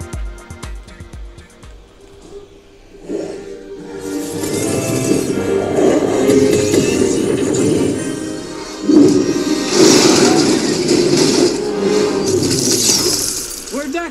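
A film's action soundtrack played through a small LED projector's single built-in speaker: a rhythmic beat with bass strikes, then a dense swell of score and effects from about three seconds in. The reviewer judges the speaker thin and fine only for a bedroom.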